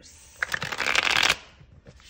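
A tarot deck (the Light Seer's Tarot) riffle-shuffled by hand: the two halves flicked together in a fast flutter of card edges lasting about a second, starting about half a second in.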